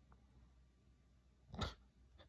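Near silence with room tone, broken about one and a half seconds in by one short, sharp puff of breath through the nose.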